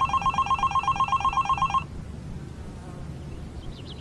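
Phone ringing with a fast, trilling electronic ring for just under two seconds, then it stops as the call is answered.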